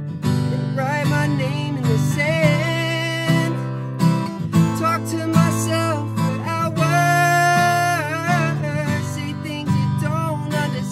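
Solo male voice singing over a strummed acoustic guitar, sung close to the microphone inside a car.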